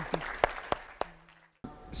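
Audience applause thinning to a few scattered claps that stop about a second in.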